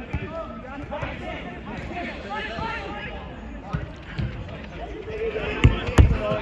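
Five-a-side football in play on artificial turf: distant players' shouts and calls, with ball kicks and running feet. A sharp thump near the end is the loudest sound.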